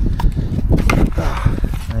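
Wind buffeting the microphone, with rustling and a few sharp clicks as a cycle helmet is lifted off by its strap.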